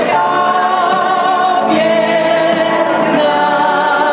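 A group of voices singing a Polish Christmas carol (kolęda) together, with long held notes.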